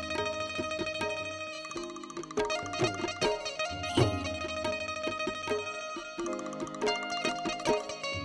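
Instrumental folk music led by a bulbul tarang (Indian banjo), its plucked strings picking out a melody over low bass notes.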